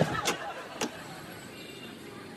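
Three sharp clicks in the first second as a window latch is turned and a glass-paned casement window is swung open, followed by a steady low background noise.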